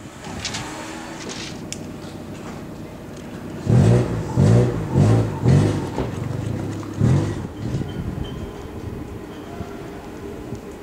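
Street noise in a town square, with a motor vehicle's engine running loudly close by from about four to seven seconds in, its pitch rising and falling several times.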